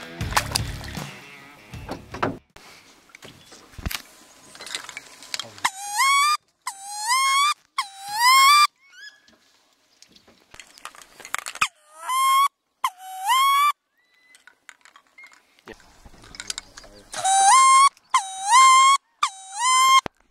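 Rock music fades out over the first couple of seconds. Then come loud squealing wood duck calls, rising 'oo-eek' whistles about a second each, in three bursts of two to four calls with quiet gaps between.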